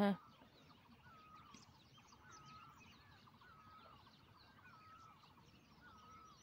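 Faint birdsong: a short warbling call repeats about once a second, with many small high chirps around it.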